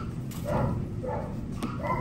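A dog giving three short, whiny yips.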